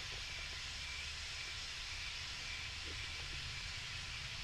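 Room tone: a steady faint hiss with a low rumble underneath, the recording's background noise.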